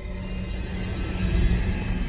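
Film soundtrack music over a low rumble, slowly growing louder.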